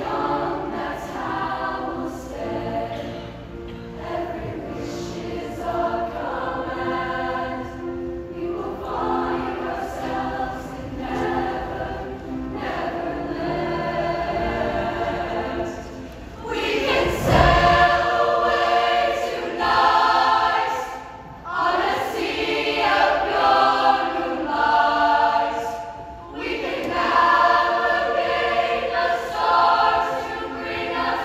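Large mixed show choir singing held chords in phrases that swell and fall back. About 17 seconds in a low thump comes, and the singing grows louder and fuller after it.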